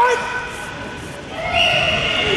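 Voices shouting long, high-pitched yells that echo in a large gymnasium hall during karate kumite bouts. A short gliding yell comes at the start, then a louder drawn-out shout about one and a half seconds in.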